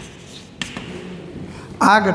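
Chalk on a blackboard: a few light taps and scratches as a word is finished. A man's voice starts loudly just before the end.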